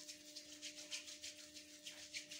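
Faint, quick rubbing of palms working cream between the hands, in even repeated strokes, over a steady low hum.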